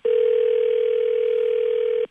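A steady telephone-style tone from a played-back voicemail recording, one unwavering pitch held for about two seconds and cutting off suddenly.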